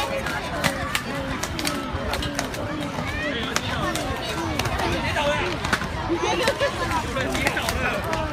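Children's voices chattering and calling over one another, over a steady low rumble of inline-skate wheels rolling on pavement, with frequent scattered clacks.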